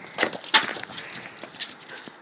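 Dry leaves and twigs crackling and rustling under a dog's feet as it scrabbles through leaf litter: two sharp crackles close together in the first half-second, then fainter ticks.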